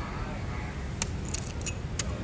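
A metal knife clicking and scraping as it works durian flesh out of the husk and into a plastic tub. There are three or four sharp clicks in the second half, over a steady low background rumble.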